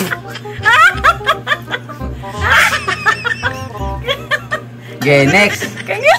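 Two people laughing and giggling over background music with a steady low beat.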